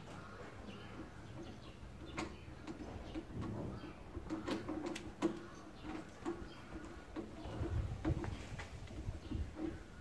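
Light, scattered clicks and knocks of battery cables, tools and a small solar panel being handled, over a faint, repeated low call in the background.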